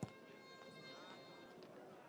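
Near silence: faint steady background of the ground's broadcast sound, with a few faint steady tones.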